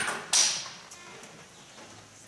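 Two short noises close to the pulpit microphone, about a third of a second apart, as things are handled at the lectern, the second the louder; then quiet room sound.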